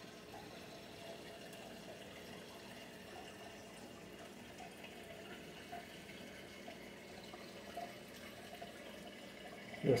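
Faint, steady sound of running water from a reef aquarium's circulation.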